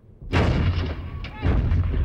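Artillery gun firing: two heavy blasts with a deep rumbling tail, the first about a third of a second in and the second about a second and a half in.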